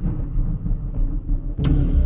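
Dramatic intro soundtrack: a low, dense rumble, then a sudden loud impact hit near the end that rings on as it fades.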